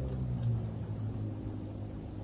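A steady low hum in a pause between speech, much quieter than the talking around it.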